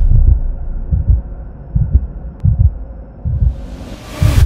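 Deep, heartbeat-like double thumps from an animated logo intro's sound design, repeating about every three-quarters of a second, with a whoosh rising near the end.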